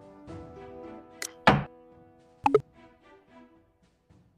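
Background music with a few sharp clicks. The loudest is a single wooden-sounding clack about a second and a half in, the move sound of a xiangqi piece being placed on the board; a quick double click follows about a second later.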